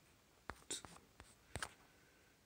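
About half a dozen faint, sharp clicks and taps at irregular spacing, with no speech.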